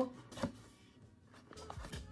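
Cardboard camera box being opened by hand: a short knock or rustle about half a second in, then faint handling noise as the lid comes up.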